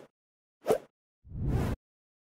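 Motion-graphics sound effects: a short pop about two-thirds of a second in, then a brief whoosh of about half a second that swells and cuts off suddenly.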